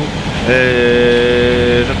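A vehicle horn sounding once: one steady multi-note chord held for just over a second, starting about half a second in.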